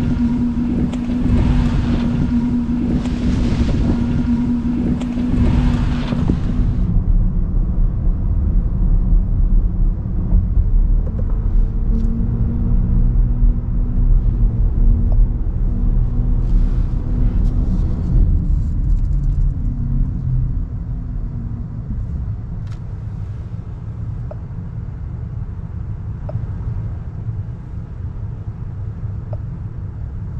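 BMW iX xDrive50 electric SUV driving, with a steady rumble of tyres on the road. A louder, hissier rush fills the first seven seconds. About twenty seconds in, the rumble falls off as the car slows to a stop.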